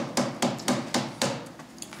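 Hands thumping on wooden legislature desks: a quick, even run of knocks about four a second that dies away about a second and a half in. This is desk-thumping in approval of the question just asked.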